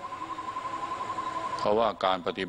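A steady, rapidly pulsing high tone, like a trill, sounds through a pause in a man's talk and stops near the end as he starts speaking again.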